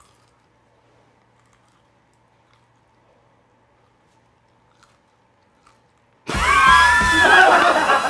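Faint close chewing of a snack, with a couple of small clicks. About six seconds in, a sudden loud burst with a wavering, sliding pitch cuts in and dominates.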